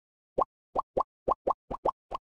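A run of short cartoon 'pop' sound effects, each a quick upward-gliding bloop, about seven in two seconds and coming faster toward the end, one for each letter of an animated logo popping onto the screen.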